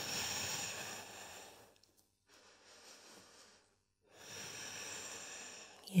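A woman breathing slowly and audibly while holding a yoga pose: a long breath at the start, a faint one in the middle, and another long, slightly quieter breath about four seconds in.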